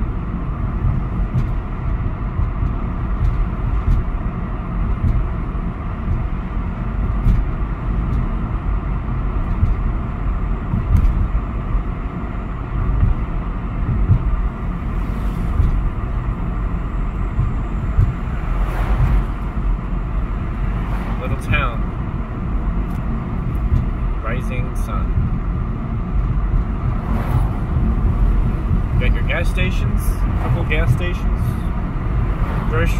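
Steady road and engine noise heard inside a moving car's cabin, a low, even rumble of tyres on asphalt.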